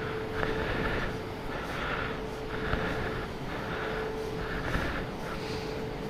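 High-pressure jet-wash lance spraying water onto a motorcycle: a steady hiss of spray that swells and fades about once a second, over a steady hum.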